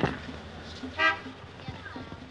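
A single short, steady horn toot about a second in, over faint background voices.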